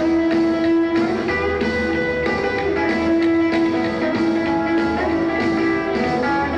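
Rockabilly band playing live: an electric guitar takes the lead over upright bass and drums with a steady beat, and no vocals.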